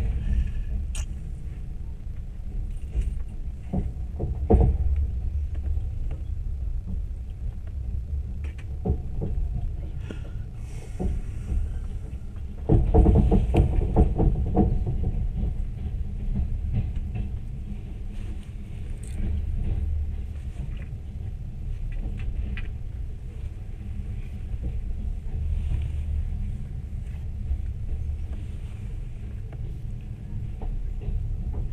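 Steady low rumble of a train running on the rails, heard from inside a passenger carriage. Louder clatter comes about four seconds in and again from about thirteen to fifteen seconds in.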